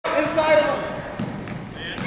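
Voices calling out in a gym, with a few knocks of a basketball being dribbled on the hardwood court in the second half.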